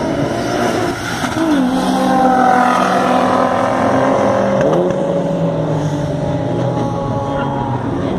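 Two cars at full throttle in a drag race, a turbocharged SEAT León and a Nissan 350Z. The engine note holds a steady pitch, then dips and climbs at a gear change about a second and a half in and again near five seconds.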